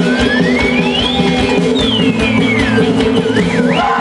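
Loud live folk-band music with a steady low drone. Over it, a thin high sliding tone rises, glides back down, then wavers up and down near the end.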